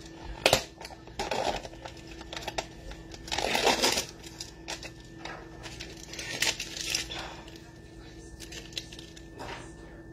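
A plastic tub of grated parmesan being handled: a sharp plastic click about half a second in, then several bursts of rustling and scraping as cheese is pinched out of the tub, the loudest a little after three seconds.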